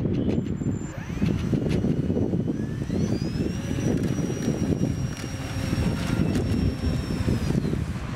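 Small electric motor and propeller of a homemade model seaplane whining as it taxis on water: the pitch climbs to a high steady whine about three seconds in, holds, and drops away near the end. Wind buffets the microphone throughout.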